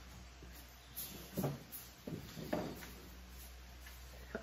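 A few faint, soft knocks and shuffles of someone moving about and handling things while retrieving a small dropped part.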